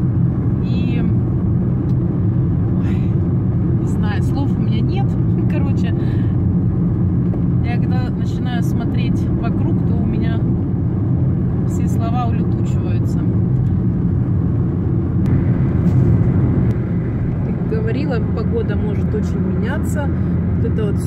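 Steady low drone of tyre and engine noise inside a car driving at highway speed, swelling briefly a little past three quarters of the way through.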